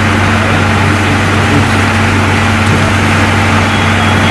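A loud, steady engine-like drone: a constant low hum under a broad hiss, with no change in pitch or level.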